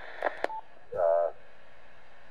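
Key click and a short single beep from a Yaesu FTM-150RASP mobile transceiver as its SDX (Super DX) audio processing is switched on. About a second in, a brief burst of received voice comes through the radio's speaker.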